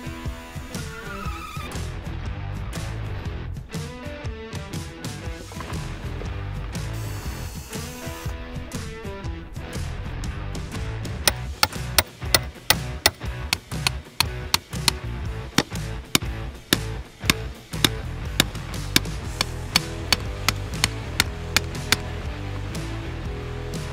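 Background music, joined from about halfway in by a run of sharp, loud knocks from a hammer driving stakes into the ground to hold a wooden concrete form board.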